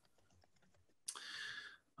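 Near silence with a few faint ticks, then a brief soft hiss lasting under a second, starting about a second in.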